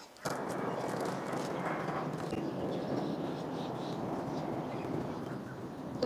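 Steady background noise of an outdoor setting, even and unbroken, with no distinct handling sounds standing out.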